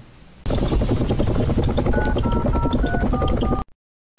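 Programme jingle: loud, dense electronic backing with a short stepped melody, starting about half a second in and cutting off abruptly near the end, leaving a brief silence.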